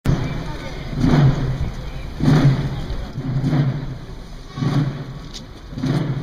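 Processional drum beating slowly and evenly, one dull stroke about every second and a quarter, over a murmuring crowd.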